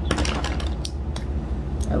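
A makeup compact and brush being handled: a few light plastic clicks and taps, a cluster at the start, then single ones around a second in and near the end, over a steady low hum.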